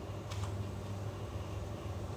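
A pot of water heating on a glass-top electric hob as it comes up to the boil: a steady low hum with a faint hiss, and a brief tick about a third of a second in.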